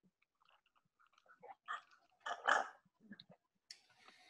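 Faint mouth sounds of eating and sipping thick whipped strawberry milk: a few soft, irregular slurps and smacks, the strongest about two and a half seconds in.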